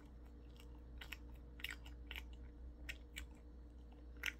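Close-miked chewing of a mouthful of cinnamon roll, with irregular sharp clicky mouth sounds, over a steady low hum.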